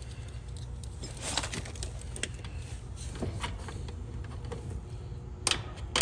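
Scattered light metallic clicks and taps of a hand nut driver working the single screw on an air-conditioner capacitor's mounting bracket, with a sharper knock near the end, over a steady low hum.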